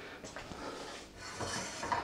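Faint, steady sizzle of a buttered sandwich toasting slowly over low heat in a stainless steel skillet, with a light knock just before the end as the pan handle is gripped.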